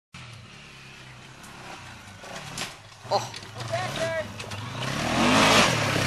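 ATV (quad) engine approaching over a dirt track, faint at first, then revving and growing steadily louder in the last second and a half as it comes close.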